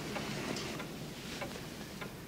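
Quiet room tone with a few faint, unevenly spaced ticks.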